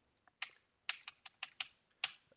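Computer keyboard keys being typed: a quick, uneven run of about seven keystrokes, starting about half a second in.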